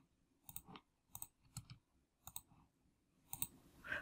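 Faint computer mouse clicks: about five quick pairs of ticks spread through the few seconds.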